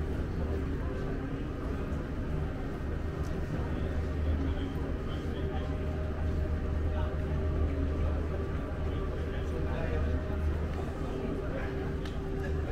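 Ambience of a large airport terminal hall: a steady low hum with a couple of constant tones over it, and faint voices of people nearby.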